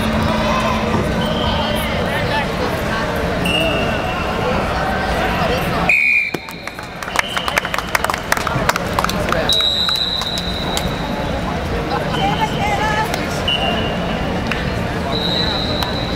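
Indoor arena hubbub: many voices talking at once, with short, shrill referee whistle blasts sounding over and over from the surrounding wrestling mats. About six seconds in the sound briefly drops and goes muffled with a scatter of clicks.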